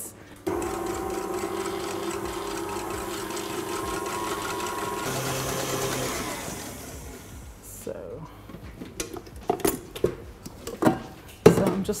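Electric stand mixer with a wire whisk running steadily as it whips double cream, then winding down about six seconds in. Sharp metallic clicks and taps follow near the end.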